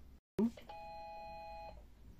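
Brother MFC-L5700DN laser printer's control-panel beeper sounding one steady electronic beep of about a second. The beep confirms the PF kit counter reset, as the panel drops back to the maintenance menu.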